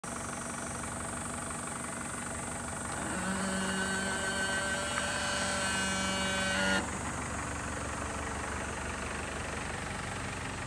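Mitsubishi Rosa minibus's 4M51 four-cylinder diesel idling steadily. From about three seconds in, a steady pitched hum sounds over it and cuts off abruptly near seven seconds.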